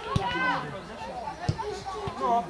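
Boys' voices calling out on a football pitch, with two sharp knocks, one near the start and one about a second and a half in.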